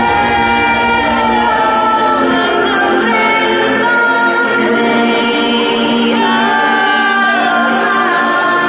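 Electronic dance music from a DJ set over a festival sound system, in a breakdown without the beat. Sustained choir-like vocals and synth chords carry it.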